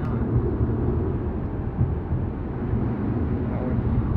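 Steady low rumble of road and engine noise inside a car cruising on a highway.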